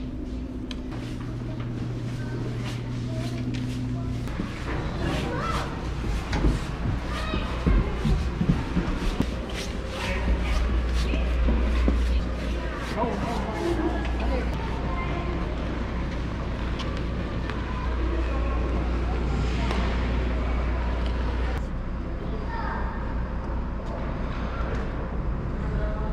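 Indoor ice rink ambience: a steady low hum under background chatter of people. A run of sharp clicks and knocks comes in the first half.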